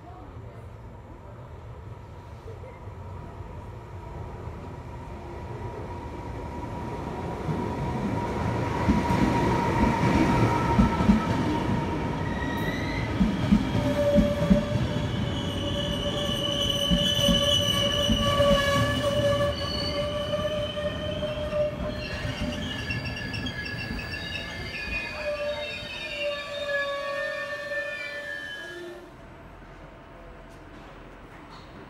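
Trenitalia regional passenger train pulling into a station. Its rumble grows over the first eight seconds or so as it draws alongside. Several steady high squeals follow as it brakes, and the sound cuts off sharply near the end as it comes to a stop.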